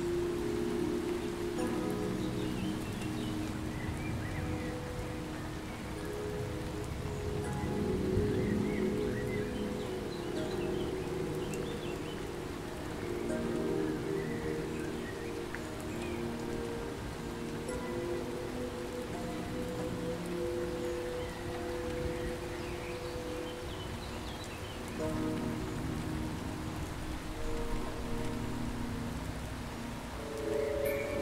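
Rain falling steadily, with soft, long-held music chords underneath that change every few seconds.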